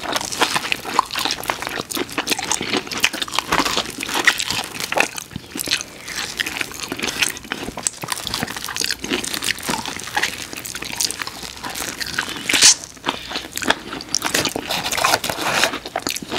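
Close-miked crunching and chewing as two people bite into breaded boneless chicken wings, an irregular stream of crisp crackles, with one louder crunch about three-quarters of the way through.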